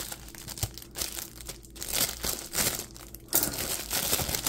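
Clear plastic bags around plush toys crinkling as they are handled, in irregular rustling bursts with a couple of brief lulls.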